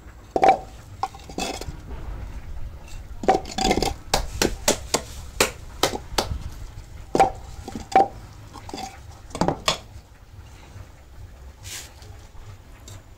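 Hardwood blocks and boards being handled, knocked together and set down on a hard floor: irregular sharp wooden clacks, some in quick clusters, stopping a couple of seconds before the end.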